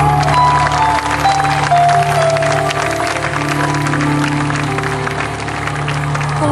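Live band music: a melody stepping downward over a held low note, with an audience clapping throughout.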